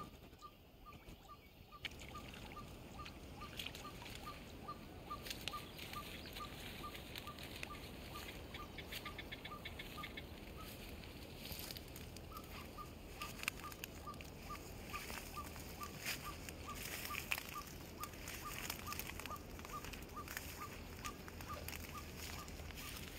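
A bird repeating one short, single-pitched note about twice a second, steady and even, with a brief pause partway through. Scattered light rustles and clicks come from the bank.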